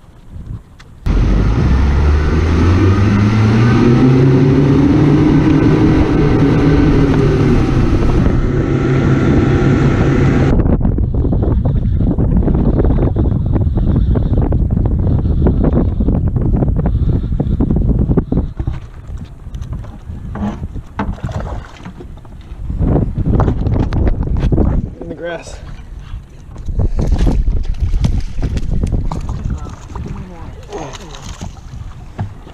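Boat motor speeding up, its pitch rising and then holding steady, cut off abruptly about ten seconds in. After that come wind on the microphone and water noise, with a few louder bursts of splashing as a hooked fish is fought and brought to the net.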